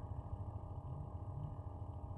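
Faint, steady low rumble of wind buffeting the microphone on open ice, with no distinct events.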